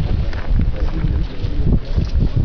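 Wind buffeting the camera microphone: a loud, irregular low rumble that gusts up and down.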